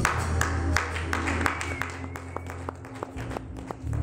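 Worship band music drops to a quiet lull as its bass notes fade out, with scattered sharp claps. The band swells back in right at the end.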